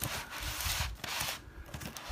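Clear plastic air-column cushion wrap rustling and crinkling as hands handle it. The rustle fades a little over halfway through, leaving a few soft bumps.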